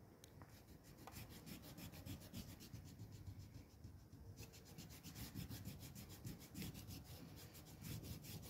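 Rubber eraser scrubbed back and forth on drawing paper, a faint, quick rhythmic rubbing of about six strokes a second, in two runs with a short pause midway.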